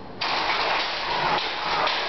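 Electric motors of a large lion robot's metal frame switching on abruptly, powered straight from a 24 V battery with no controller, and the frame rattling unevenly as it bucks.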